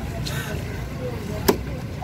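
A single sharp chop of a large cleaver through fish onto a wooden chopping block, about one and a half seconds in, over a low hum of street noise and faint voices.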